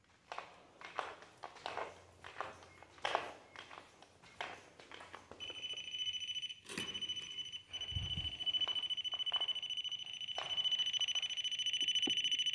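Clicks and rustles of equipment being handled, then about five seconds in an electronic device starts a shrill, rapidly pulsing alarm tone that keeps going, with a single thud partway through.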